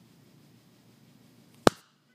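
Faint room tone, then a single sharp click about a second and a half in as the handheld camera is handled to stop recording, after which the sound cuts to dead silence.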